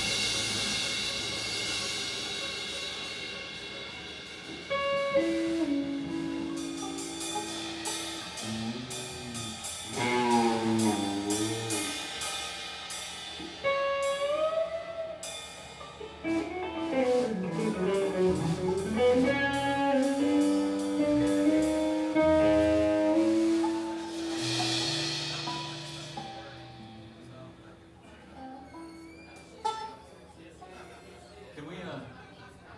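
A live band of electric guitar, bass guitar and drum kit jamming: the guitar plays held notes with wide string bends over bass and drums, with a cymbal crash about three-quarters of the way through, and the music thins out and gets quieter near the end.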